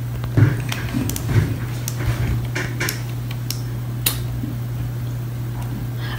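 A steady low hum with a few light clicks and knocks scattered through the first four seconds, the sharpest about four seconds in.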